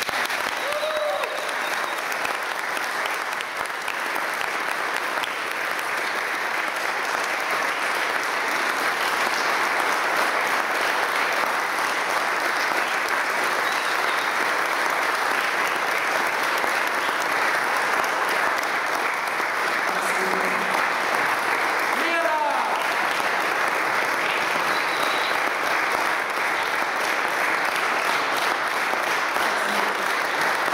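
Audience applauding steadily at the end of a song, with one brief rising whoop about two-thirds of the way through.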